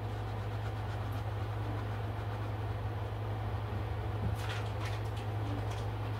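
Steady low hum of room noise, with a few faint short scratches about four to five seconds in.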